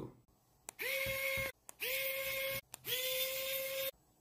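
A small electric motor runs in three short bursts, each under a second, rising briefly in pitch as it starts, then holding a steady whine with a hiss, with a light click before the first.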